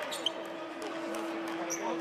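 Basketball arena sound during a stoppage in play: an even background of crowd and court noise with scattered short squeaks and knocks. A steady low tone comes in just after the start and holds throughout.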